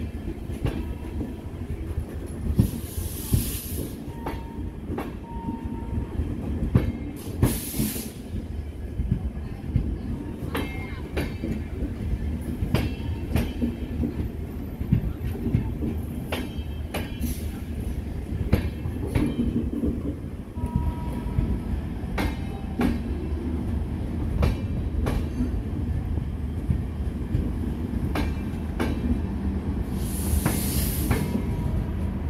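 Express train coaches rolling slowly past a platform as the train departs, wheels clicking over rail joints above a steady rumble. Two short bursts of high hiss come about three and seven seconds in.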